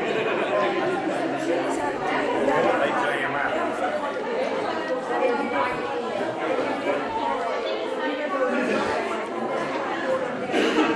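Many people chatting at once in a large hall: overlapping voices with no single speaker standing out.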